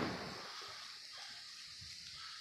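The rumbling echo of an aerial firework's bang fading away, then faint outdoor background noise.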